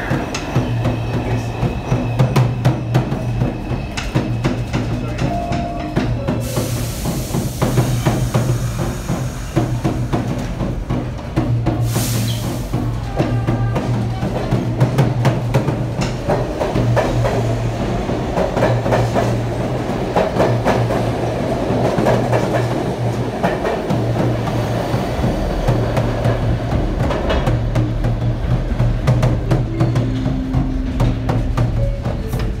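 A busker's tall wooden hand drum played with quick, steady strikes over the low rumble of a subway train. A long hiss comes in about six seconds in and cuts off with a short sharp burst around twelve seconds.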